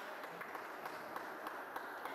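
Steady background hubbub of a large, busy hall, with scattered light clicks and taps every few tenths of a second.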